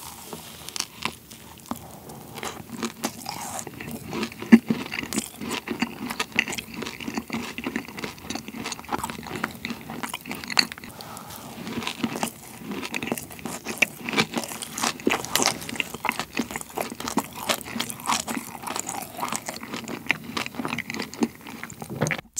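Close-miked biting and chewing of a thick cream-filled macaron (a ttungkaron, banana-milk flavour): the crisp shell crunches between the teeth amid continuous irregular mouth clicks. The loudest crunch comes about four and a half seconds in.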